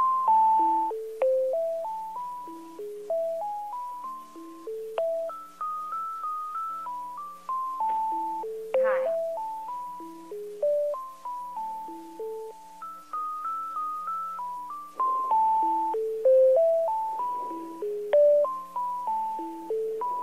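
Telephone hold music: a simple electronic keyboard melody of single struck notes that step up and down in pitch and fade after each strike, playing while the caller waits to be transferred.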